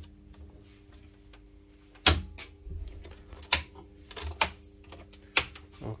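Sharp mechanical clicks of switchgear in a pool-plant control panel as a motor protection breaker is tripped and its contactor drops out. There are about five clicks, starting about two seconds in and the loudest first, over a steady electrical hum.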